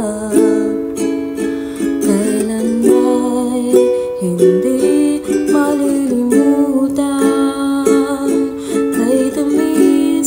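Ukulele strummed steadily, accompanying a woman singing a slow Tagalog love ballad.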